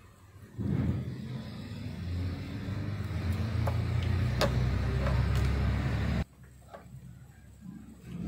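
A low-pitched motor drone starts about half a second in, grows slightly louder and cuts off suddenly about six seconds in, with a few faint clicks over it.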